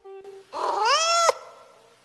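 A faint short tone, then a single cat-like meow that rises in pitch for under a second and cuts off sharply.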